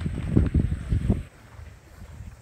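Wind buffeting the microphone in irregular low rumbling gusts, dying down about halfway through.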